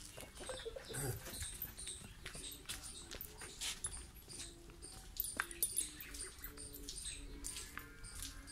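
Farmyard background: small birds chirping over and over. A few sharp clicks come about five seconds in, and a faint wavering tone sounds in the second half.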